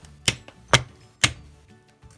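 New plastic drive gear of a mini milling machine being tapped down onto its keyed shaft: three sharp taps about half a second apart, the last a little past the middle.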